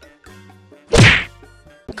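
A single loud punch impact sound effect about a second in: an anime-style whack of a fist landing hard, fading quickly.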